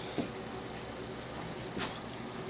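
Quiet steady background hum with two brief, faint knocks about a second and a half apart.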